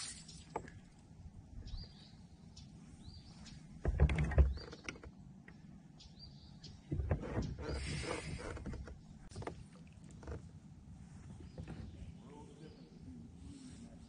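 Knocks and handling noise on a fishing kayak: a heavy thud about four seconds in and a longer rustle about seven seconds in. Faint short high bird chirps sound between them.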